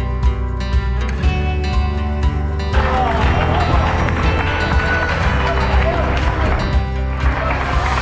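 Background music with a steady bass line. About three seconds in, the noise of a street crowd joins it: spectators clapping and calling out.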